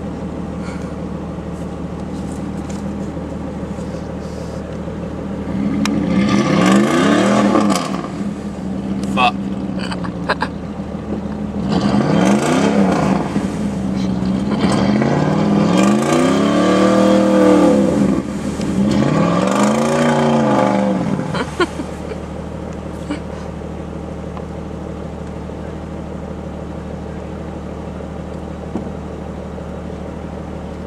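A stuck, lifted 1994 Jeep Grand Cherokee ZJ revving its engine four times, each rev rising and falling, with the tires spinning in deep mud. A steady engine idle runs underneath, and after the last rev only the idle remains.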